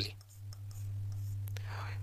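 Marker pen writing on a whiteboard, a faint scratching near the end, over a low steady hum.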